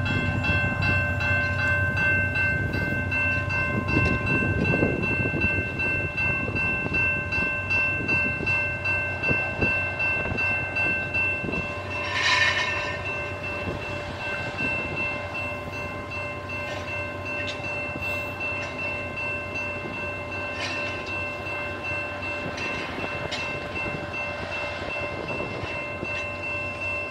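Railway work train with an electromagnet crane, reclaiming scrap iron along the track: a steady high-pitched whine made of several tones runs throughout, over a low rumble and faint regular ticking. A brief louder burst comes about twelve seconds in.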